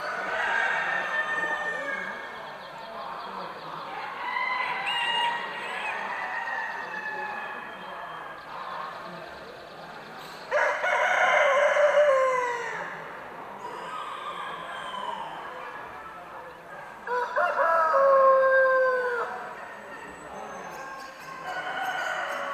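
Roosters crowing. The two loudest crows come about ten and seventeen seconds in, each falling in pitch at its end, with fainter calls and a murmur of voices between them.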